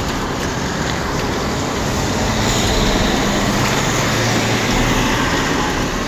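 Road traffic noise: vehicles passing on the road, with a steady rush that swells gently toward the middle and carries a low engine hum.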